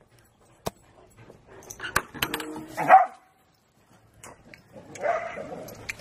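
An excited whippet barking and whining, loudest about three seconds in, with a few sharp knocks.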